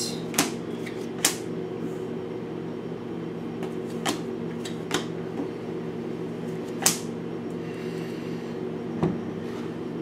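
Tarot cards being handled and drawn from the deck and laid on the table: a handful of short clicks and snaps at irregular intervals, the sharpest about seven seconds in, over a steady low hum.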